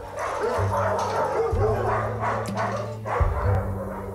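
Several dogs barking at once in a dense, overlapping din, over low sustained music.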